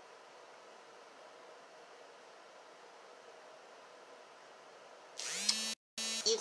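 Electric fan running steadily in the room, a quiet even hum with a faint steady tone. Near the end a brief vocal sound comes in, followed by a split second of total silence.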